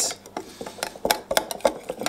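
Metal wire whisk beating a thick pepper-paste marinade in a glass bowl: quick, irregular clicks and ticks of the wires against the glass.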